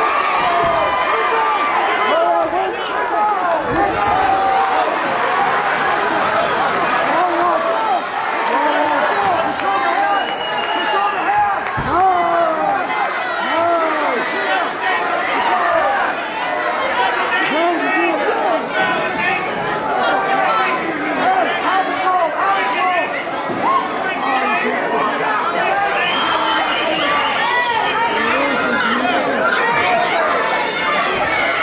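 Crowd of spectators talking and shouting over one another, many voices overlapping in a steady din.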